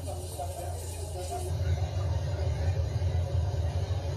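Low, steady rumble of a mud and debris flow rushing through a street, heard through a TV speaker. It grows louder about a second and a half in. Faint voices sit under it at first.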